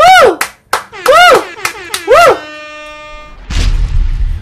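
A man's excited high-pitched squeals: three loud whoops that each rise and fall in pitch, about a second apart. They are followed by a steady held tone and then a low rushing whoosh near the end as a video transition starts.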